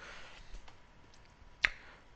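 Low room hiss with a single sharp click near the end.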